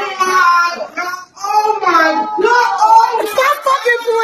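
High-pitched, drawn-out shouting and shrieking from several people, voices overlapping with no clear words.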